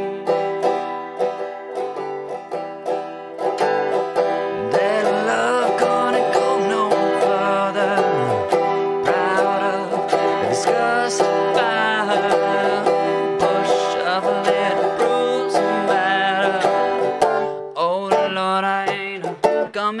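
Banjo played in a steady, driving strummed rhythm, a long instrumental stretch of a bluegrass-style song.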